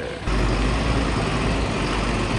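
Diesel engine of a BharatBenz recovery truck running with a steady low rumble while it tows a crashed truck on its crane boom.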